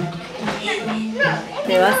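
Children's voices at play, with background music carrying a slow bass line; a woman's voice begins near the end.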